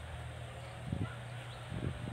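Two soft, dull footsteps on grass, about a second in and near the end, over a low steady hum of outdoor background.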